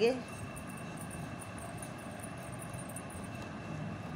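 Steady background hiss and hum with a faint constant high whine, like a fan or room appliance running, and a few very faint light ticks in the first half.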